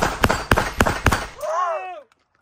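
A rapid string of pistol shots fired about a quarter second apart, ending a little over a second in. A short voice follows near the end.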